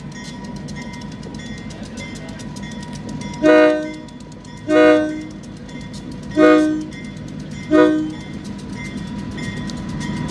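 Providence & Worcester diesel locomotive sounding four short blasts on its multi-note air horn as it approaches a grade crossing, over the low rumble of its diesel engine, which grows louder near the end as the train draws closer.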